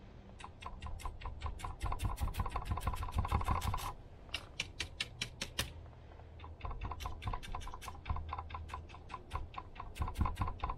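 Small paintbrush dabbing paint onto a weathered driftwood plank: quick dry taps, about seven a second, in runs broken by short pauses about four and six seconds in.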